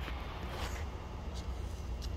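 Quiet, steady low background hum with a few faint, brief handling ticks.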